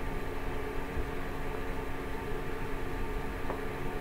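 A steady machine-like hum: several constant tones over a low rumble and hiss, with a faint tick about three and a half seconds in.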